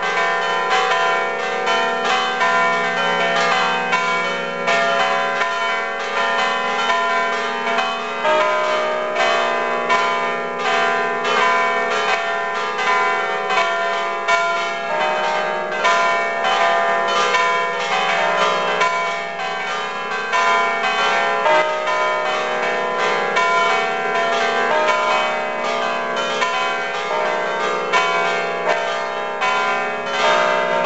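Full peal of seven church bells ringing together: six smaller bells cast by Achille Mazzola in 1977 and a large bell cast in Genoa in 1880. Rapid, overlapping strokes, several a second, over a steady low hum, with no pause.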